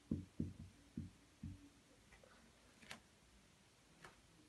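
Marker pen knocking faintly against a whiteboard as words are written: five or six short low knocks in the first second and a half, then a few light clicks, the sharpest about three seconds in.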